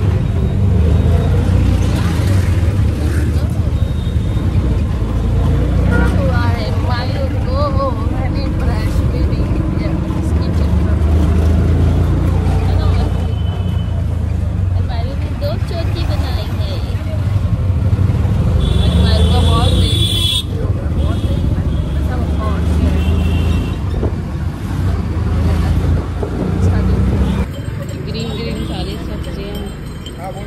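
Auto-rickshaw riding through street traffic: a loud, steady low engine and road rumble heard from inside the cabin, with a brief higher sound about two-thirds of the way through. It cuts off shortly before the end.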